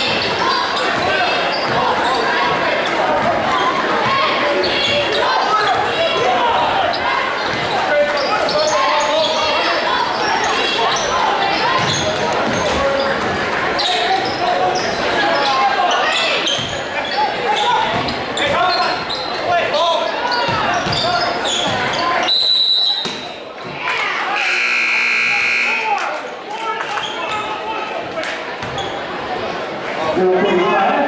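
Gymnasium crowd chatter over basketballs bouncing on the hardwood court. About three-quarters of the way in, a short high whistle blast is followed by the scoreboard buzzer sounding for about two seconds.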